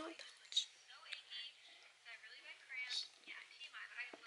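Soft, quiet whispering, with a few faint high-pitched voiced sounds about a second in and again between two and three seconds in.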